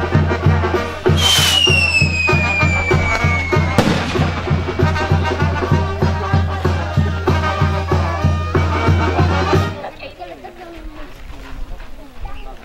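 Brass band (banda de viento) playing with a steady, even bass beat, stopping abruptly near ten seconds in. About a second in, a skyrocket whistles with a falling pitch for a couple of seconds and ends in a sharp bang.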